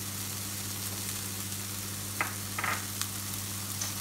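Sliced onion and capsicum sizzling steadily in a hot frying pan while being stirred with a silicone spatula, with a few brief stirring sounds in the second half.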